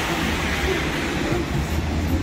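Heavy rain pouring, a steady loud hiss with a low rumble under it.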